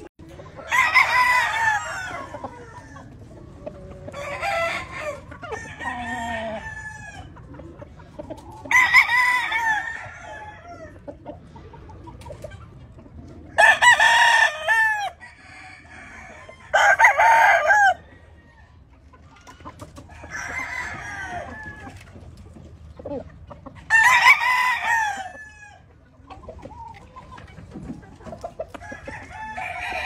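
Claret gamefowl roosters crowing over and over, one crow every few seconds: five loud, close crows with fainter crows from other birds between them.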